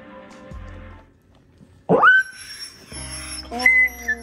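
A husky in labour gives one loud, sharp squeal about two seconds in. The pitch rises fast, then holds. It is the pain of pushing out a puppy, and it plays over soft background music.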